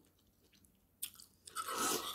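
Close-up eating sounds: quiet at first, then about a second in a click and a short burst of wet chewing.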